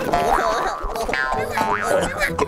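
Cartoon brawl sound effects over background music: springy boings and quick squeaky glides rising and falling in pitch.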